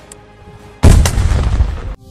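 A sudden, very loud explosion close by about a second in, a blast with a deep rumble that is cut off abruptly near the end.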